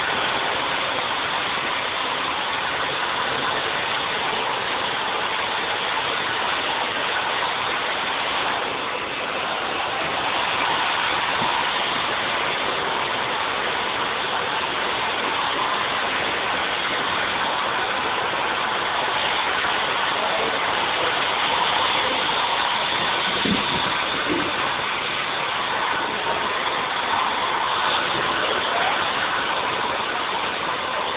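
Handheld hair dryer blowing steadily, its fan and motor running without a break.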